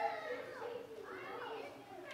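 A young child's voice, talking or babbling with a high, gliding pitch.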